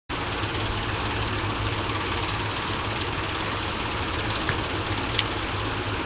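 Steady hiss with a low hum underneath, with one faint click about five seconds in.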